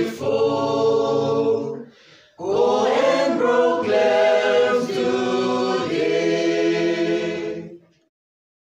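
A choir singing a students' union anthem. One phrase ends about two seconds in, and after a brief pause a longer phrase follows and fades out just before the end.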